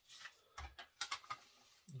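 Faint handling noises: a few light clicks and soft rustles as a freshly creased cardstock CD insert and a clear plastic jewel case are picked up and handled.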